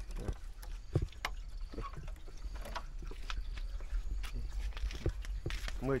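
Scattered light clicks and knocks over a steady low rumble.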